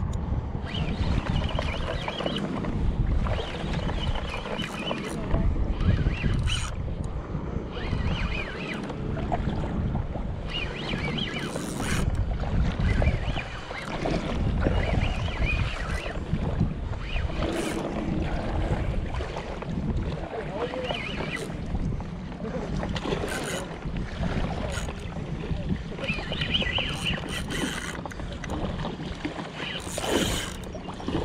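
Gusty wind buffeting the microphone over choppy bay water, with a Shimano Spheros spinning reel cranked in short spurts as a hooked bluefish is fought on the line.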